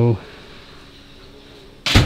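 A single sharp knock near the end, dying away over a few tenths of a second, over a faint steady background; the end of a spoken word at the very start.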